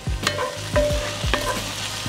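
Wooden spatula stirring chicken and vegetable filling in a cast-iron skillet, with several short taps and scrapes against the pan over a steady sizzle.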